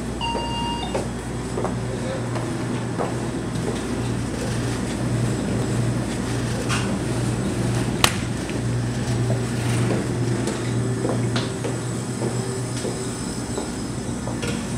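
Convenience-store room sound: a steady low hum with scattered small clicks, a short electronic beep at the very start, and a sharp click about eight seconds in as a glass cooler door is opened.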